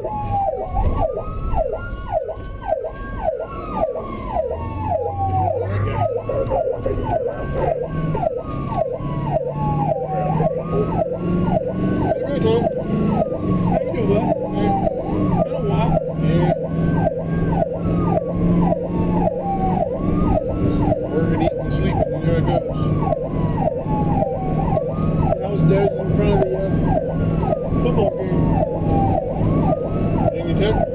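Ambulance electronic siren heard from inside the cab, sounding continuously: a rapid yelp with a slower wail that rises and falls about every four and a half seconds.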